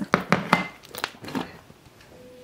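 A few sharp knocks and clicks, about five in the first second and a half, as a food bowl is handled and set down on a hardwood floor.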